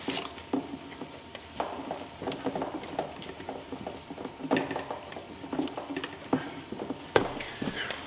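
Nylon zip ties being pulled tight around a PVC pipe to fasten a septic float's cable: short ratcheting rattles and scattered plastic clicks, on and off.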